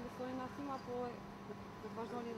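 A person's voice speaking quietly in short broken bits, over a faint steady hum.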